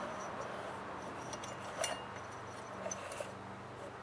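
Quiet room tone with a low steady hum and two faint clicks, about two and three seconds in, as the cut-off saw's flywheel is turned by hand to move the piston.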